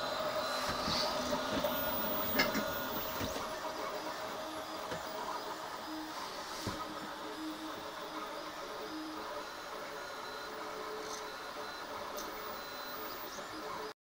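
A RepRap-style 3D printer on a Makeblock frame printing. Its stepper motors whine in short tones of changing pitch as the print head moves, over a steady tone, a little louder in the first few seconds.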